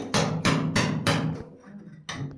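Hammer blows on a steel chisel chipping set cement away from a pipe fitting buried in a tiled wall, to free it for removal. A quick run of sharp strikes, about three a second, easing off after about a second and a half.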